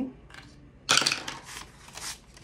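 A die rattling down through a small wooden dice tower and clattering to a stop in its tray, a quick burst of clicks about a second in.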